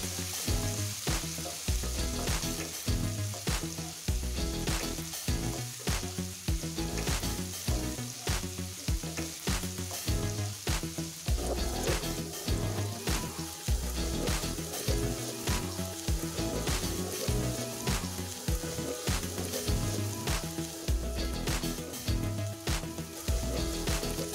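Ginger-garlic paste and cumin sizzling in hot oil in a nonstick kadhai, with a wooden spatula scraping and stirring it round the pan.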